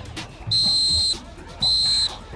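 Short, piercing high-pitched signal blasts, each a steady tone of about half a second, repeated about once a second, of the kind used to signal plays during football practice.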